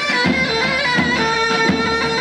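Traditional Turkish folk music from a live band: a loud, reedy wind melody on long held notes over a steady drum beat of about one and a half strokes a second.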